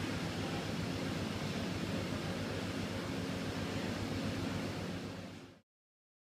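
Steady low hum and hiss of an idling diesel locomotive close by. It fades out and cuts to silence about five and a half seconds in.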